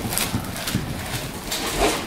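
Horse galloping on arena dirt: a run of irregular hoofbeat thuds under a steady hiss of noise.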